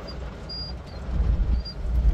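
Vehicle driving on a dirt road, heard from inside the cab: a steady low rumble of engine and tyres that grows louder about a second in.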